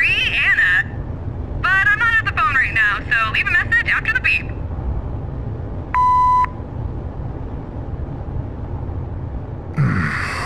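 A phone call over a vehicle's low road rumble: a warbling, garbled recorded voice, then a single steady beep lasting about half a second, six seconds in, the voicemail tone that signals the start of recording.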